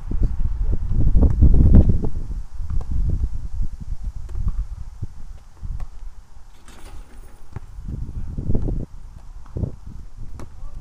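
Wind buffeting the microphone in an uneven low rumble, strongest in the first two seconds and easing after, with a few faint thuds and ticks scattered through it.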